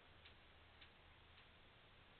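Near silence: faint room tone with three small, light ticks about half a second apart.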